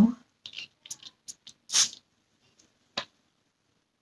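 A single short hiss of a perfume atomizer spraying onto a paper scent strip, about two seconds in, after a few faint handling noises. A sharp click follows about a second later.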